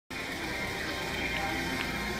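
Faint background music over the steady room noise of a car showroom.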